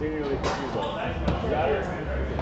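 Foosball in play: the ball and rod-mounted men knock against each other and the table, with two sharper strikes about half a second and a second and a quarter in.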